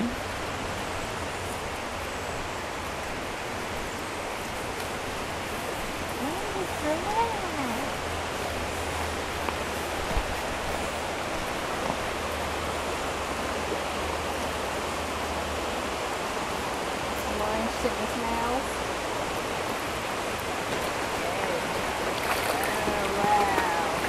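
Mountain stream flowing steadily over rocks, with faint voices now and then.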